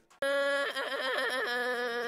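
A boy crying out loud, one long wavering wail that starts abruptly, while another voice asks "why are you crying?"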